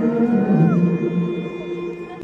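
Ambient interlude music: sustained low synth tones under a gliding, whale-like tone that rises and then falls away, fading toward the end.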